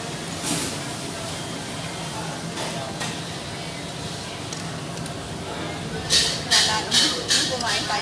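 Background chatter and a steady low hum of a busy restaurant; about six seconds in, a quick run of loud scraping strokes, about three a second, as a pair of disposable wooden chopsticks is rubbed together.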